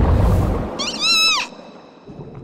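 Cartoon dugong's high-pitched call, one cry that rises and then falls, about a second in. It follows a low rushing rumble of whirlpool water that fades out as the call starts.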